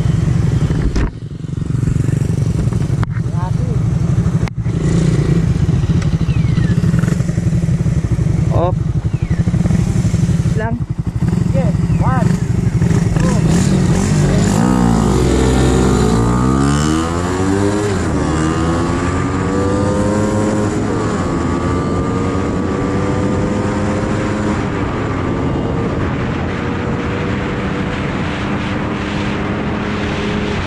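Suzuki Raider 150 Fi single-cylinder motorcycle engine running steadily at standstill, with a few sharp clicks in the first five seconds. From about fourteen seconds in, the bike pulls away and accelerates, its engine pitch gliding and then rising steadily.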